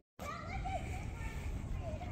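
Outdoor street ambience with faint, distant children's voices at play, after a brief moment of silence at the start.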